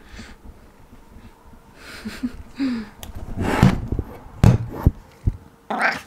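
Breathy sniffs and snuffles close to the microphone, with soft bumps. The loudest bursts come about three and a half and four and a half seconds in. Two short, low murmured hums come a little after two seconds.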